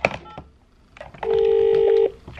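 Telephone ringing tone from a hotel room phone handset while an outgoing call waits to be answered: a steady electronic tone starting just over a second in and lasting about a second, the same tone having sounded shortly before. A few handling clicks come near the start.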